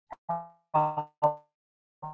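A woman's voice in short, broken-off fragments of syllables with gaps between them, at the same pitch as the talk around it.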